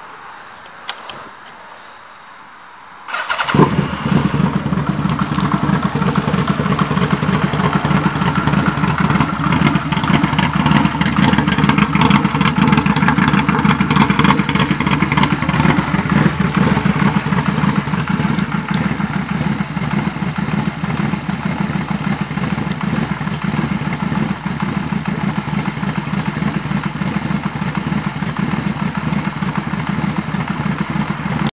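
A 2007 Yamaha V-Max's V4 engine is started about three seconds in, after a couple of faint clicks, then idles steadily.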